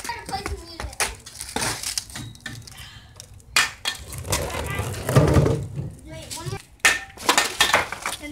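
Skateboard clattering on concrete: several sharp clacks as the deck and wheels strike the ground, with one of the sharpest late on.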